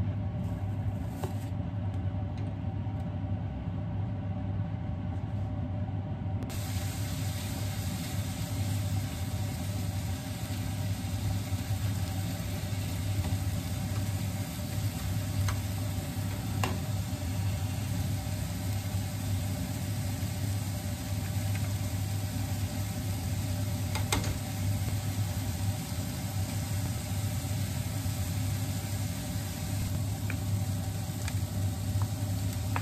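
Ground meat sizzling as it fries in a hot frying pan over a gas burner. The sizzle starts suddenly about six seconds in, as the meat goes into the pan, over a steady low hum, with a couple of sharp clicks from the spatula against the pan.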